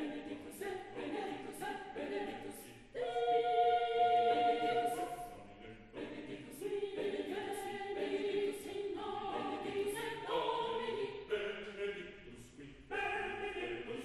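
Mixed choir of men's and women's voices singing a Mass setting in held chords. Phrases break off and re-enter, with a fresh, louder entry about three seconds in and again near the end.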